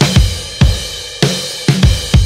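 Drum kit playing a break in a band recording: kick drum and snare hits with cymbals over a bass guitar line, about five or six sharp hits in two seconds.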